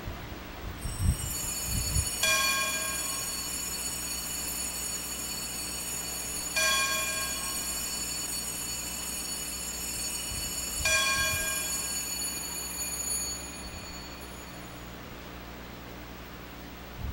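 Altar bell struck three times, about four seconds apart, each ring hanging on for a few seconds before fading, marking the elevation of the chalice after the consecration at Mass. A steady low hum runs underneath.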